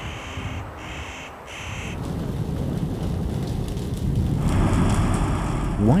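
A crow caws three times over a low rumble. From about four seconds in, the rumble gives way to a louder, steady roar of a forest fire burning.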